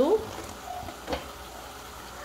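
Browned ground beef sizzling softly in a pot as diced tomato is tipped in from a wooden cutting board, with a single knock a little after a second in.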